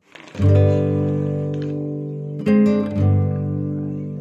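Background music: acoustic guitar chords strummed about half a second in and again about two and a half seconds in, each left ringing.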